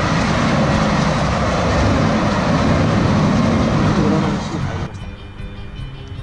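A passenger train passing close by at a level crossing, a loud rushing rumble of wheels on rail that falls away about five seconds in.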